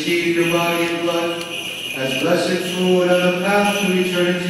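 A man's voice chanting a slow liturgical melody in long held notes, with a short break about two seconds in.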